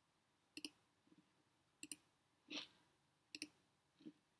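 Three quiet computer-mouse clicks about a second and a half apart, each a quick press-and-release double tick, as options are picked in a software dialog. A softer short rustle between the second and third clicks.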